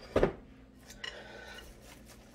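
A dish knocked and clattered against a stainless steel cooking pot as sliced onions are tipped in, loudest about a quarter second in, followed by a fainter ringing clink about a second in.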